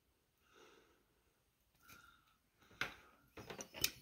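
Two faint, soft puffs of breath blown through a bubble wand, sending dyed bubbles onto paper; then a sharp click about three seconds in and a few lighter clicks near the end.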